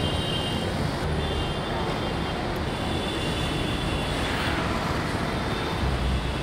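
Steady road traffic noise, a continuous low rumble.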